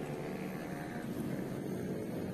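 Steady din of dense motorcycle traffic: many small engines running together as the column rolls past.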